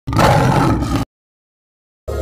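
A lion's roar sound effect, loud and about a second long, cutting off suddenly.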